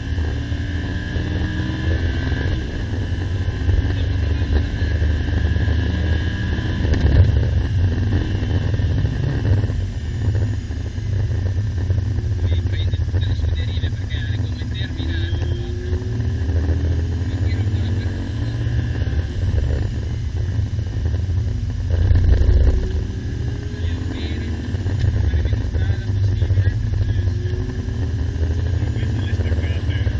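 Lamborghini Gallardo's V10 engine heard from inside the cabin, driven hard on track. Its pitch climbs in repeated rising sweeps as it accelerates and drops away under braking, over a constant heavy rumble.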